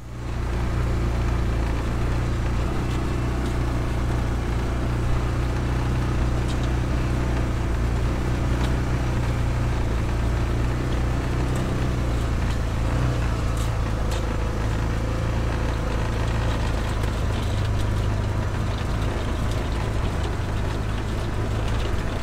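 Small off-road utility vehicle's engine running steadily while driving across a grass field, with a strong low hum and rattling ride noise.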